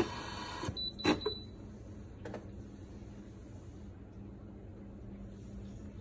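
Brewsly espresso machine: a steady hiss cuts off under a second in, followed by a short high beep and a few sharp clicks as its top buttons are pressed, then only a faint low hum.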